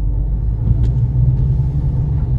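Car engine and road rumble heard from inside the cabin: a steady low drone as the car moves off from a stop and drives on.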